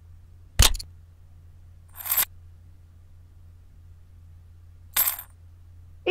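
A heavy glass crystal set down on a wooden board with one sharp clack about half a second in, followed by two short, high, coin-like clinking jingles about two and five seconds in: added ASMR stop-motion sound effects.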